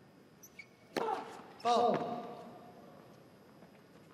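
A tennis serve: a sharp racket strike on the ball about a second in, followed about two-thirds of a second later by a louder short called word, the automated line-call voice calling the serve a fault.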